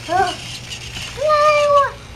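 A young child's voice making wordless vocal sounds: a short, rising-and-falling exclamation right at the start, then a long, held high-pitched "aaah" through most of the second half.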